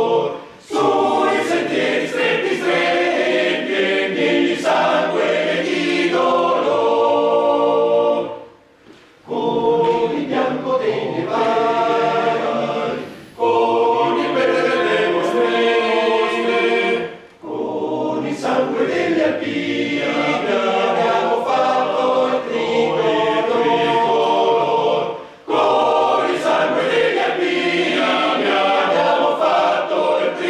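Male voice choir singing unaccompanied, in sustained phrases separated by short breaks, the longest about eight and a half seconds in.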